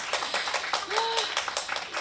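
Audience applause: many hands clapping right after a speech ends, with a short voice sound about a second in.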